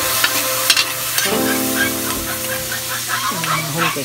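Diced meat sizzling in a wide metal wok, with a metal spatula stirring it and scraping and clicking against the pan now and then.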